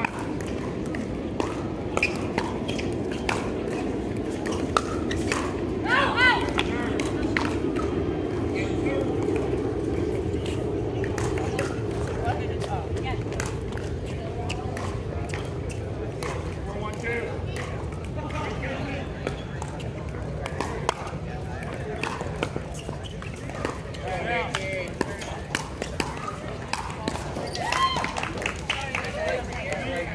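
Voices talking with frequent, irregular sharp pops of pickleball paddles striking balls, over steady low background noise.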